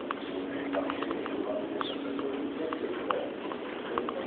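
Footsteps clicking on a hard terminal floor, irregular sharp steps about two a second, over a steady low hum and faint distant voices.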